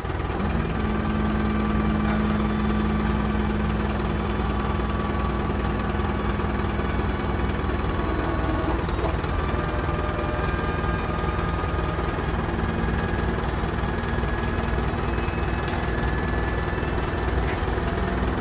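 BÄR tail lift's electro-hydraulic pump running steadily as it raises the chequer-plate platform and folds it up closed, its hum shifting slightly in pitch about eight to nine seconds in. A low steady rumble runs underneath.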